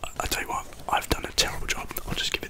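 A man whispering close into a microphone, with short sharp clicks between the whispered words.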